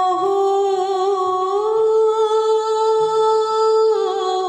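A woman's voice holds one long note of a Sinhala walapum gee folk lament, humming-like and without clear words. The pitch eases slightly higher about two seconds in.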